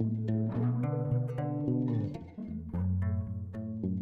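Instrumental background music.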